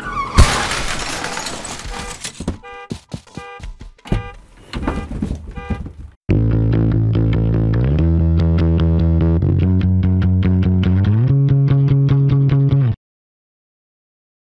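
Cartoon car crash sound effect: a loud smash just after the start, with a crashing, shattering noise that fades over a couple of seconds, followed by scattered clicks. About six seconds in, the show's title theme music starts loud and steady, then cuts off abruptly about a second before the end.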